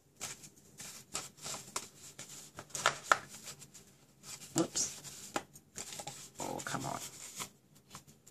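Folded cardstock being handled: scattered light rustles, taps and scrapes of paper as the flaps of a small paper box are tucked in and pressed down, the loudest about three seconds in and again a little later. A brief vocal sound comes about six and a half seconds in.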